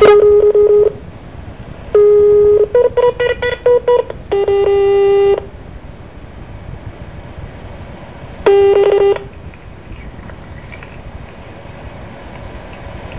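Telephone keypad and line beeps: a beep, then a quick run of short key-press beeps, a longer beep, and a last beep several seconds later.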